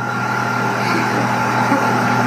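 Tesla turbine spinning a generator at about 14,000 RPM under a heavy electrical load of light bulbs and a battery charger, running steadily: a low hum and a high steady whine over an even rushing noise.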